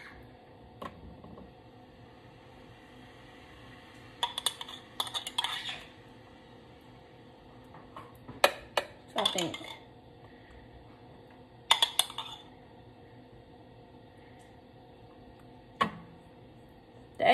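A table knife clinking and scraping against an open glass jar and a metal baking pan in four short bursts, as a spread is scooped out and laid thinly over food.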